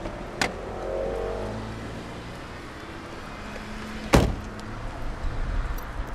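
Car door unlatching with a sharp click, then slammed shut about four seconds in; the slam is the loudest sound.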